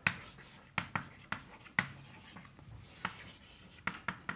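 Chalk writing on a blackboard: a string of irregular sharp taps with light scratching between them as letters are formed.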